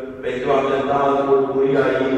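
A man's voice chanting an Orthodox akathist hymn in long held notes, with a short break for breath just after the start.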